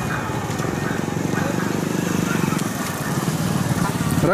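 Motorcycle engine idling: a steady, fast low pulsing, with faint voices over it.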